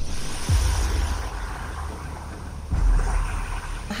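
Steady rushing noise of ocean surf and wind, with a low rumble beneath it and two deep falling booms, one about half a second in and another near three seconds.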